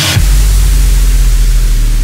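Electronic dance track at a transition: a bright noise sweep cuts off just after the start, and a deep, sustained sub-bass note comes in under a fading wash of hiss. No drums are heard.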